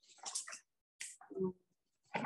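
A few faint, short snatches of a voice murmuring, each cut off abruptly, with dead silence in between.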